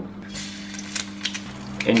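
Light kitchen clicks and taps, with a short hiss about half a second in, over a steady low hum.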